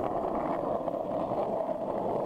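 Skateboard wheels rolling steadily over rough asphalt, an even rumbling hiss with no pops or landings.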